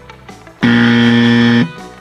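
Wrong-answer buzzer sound effect: one loud, steady low buzz lasting about a second that starts and cuts off abruptly, marking a mistake just spoken.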